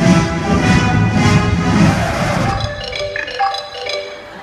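Music from a live dance stage show, loud and full with a heavy low beat until about two and a half seconds in, when it drops away to a few separate high chiming notes.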